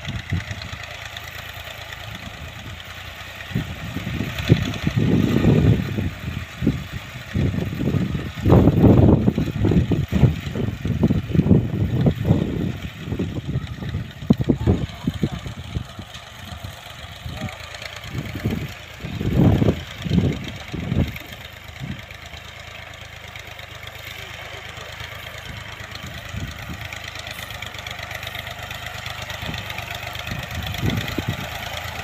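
Tractor engine running steadily at a distance while it pulls a ridger through a field, with irregular gusts of wind buffeting the microphone that come and go, strongest in the first half.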